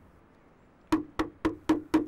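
Five quick knocks on a wooden door, evenly spaced about a quarter second apart, starting about a second in: someone at the door.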